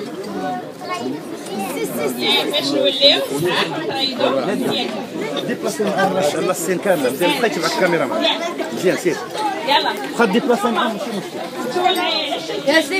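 Many voices talking at once: overlapping chatter of a group of children and adults.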